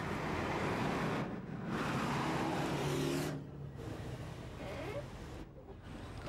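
Street traffic noise: a steady rush of passing vehicles, with a faint engine hum around the middle, that drops away abruptly twice.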